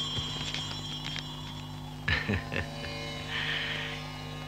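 Steady low drone from a film soundtrack's background, with a few faint soft rustles and a short hiss about three and a half seconds in.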